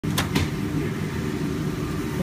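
A steady low mechanical hum, with two sharp clicks a fraction of a second in.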